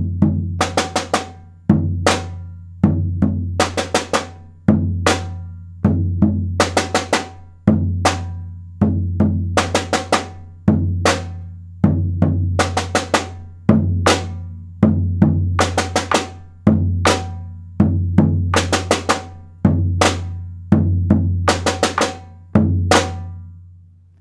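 A rope-tuned wooden bass drum and a metal snare drum played together in a repeating 'boom, boom, cha cha cha cha, boom, cha' rhythm, the booms low and ringing under sharp snare strikes. The pattern comes round about every three seconds, eight times over, and the last boom dies away near the end.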